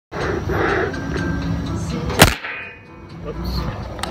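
A sharp knock about halfway through as the handheld camera is bumped and tips over, against steady outdoor background noise.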